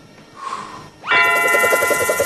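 Cartoon theme-song intro starting about a second in: a quick upward swoop into a held chord over a fast, even pulse, just before the singing comes in.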